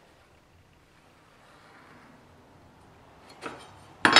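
Faint scratch of a pencil drawing a light line on plywood along the edge of a square, with a short click near the end.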